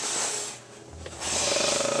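Rubbing and scraping noise close to the microphone in two stretches: one fading about half a second in, the other starting a little past one second with a fine, rapid rasp.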